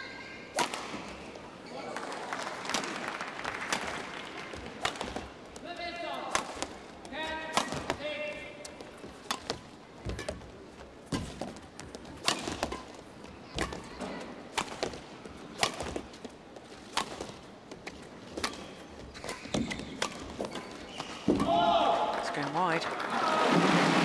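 Badminton rally: a feather shuttlecock is struck back and forth by two rackets, a sharp crack about once a second, over a murmuring arena crowd. Near the end the crowd's voices rise as the rally closes.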